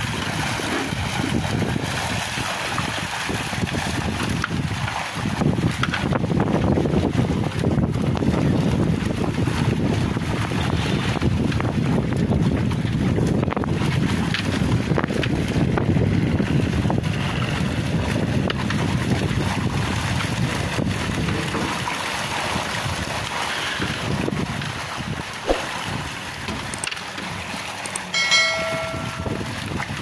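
Water splashing and churning as a net crowded with tilapia is hauled up in a fish cage pen, with wind on the microphone. A short electronic chime sounds near the end.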